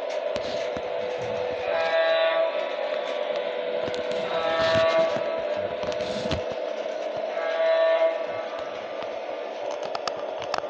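Battery-powered toy Santa Fe Super Chief train running on plastic track: its small electric motor gives a steady whir, and three short electronic horn sounds play from the train, a few seconds apart.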